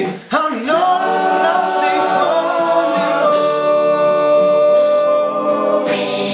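An all-male a cappella group singing: after a brief break about a third of a second in, the voices hold sustained chords, with the vocal percussionist's clicks and beats under them.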